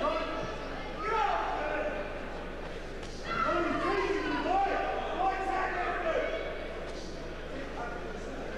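Men's voices calling out, indistinct and echoing in a large hall, with a drawn-out call in the middle, over a steady low electrical hum.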